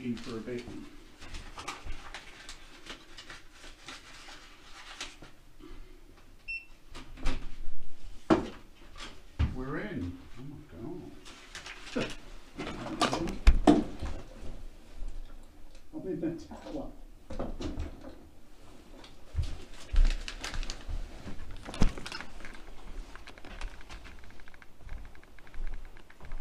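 Handling noise of a textile luggage bag being carried into a hotel room: repeated knocks, clicks and rustles, with a door.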